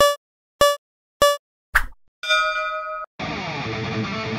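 Race-start countdown sound effect: three short, identical beeps at an even pace, a brief noisy burst, then a longer start tone. Rock music with electric guitar begins about three seconds in.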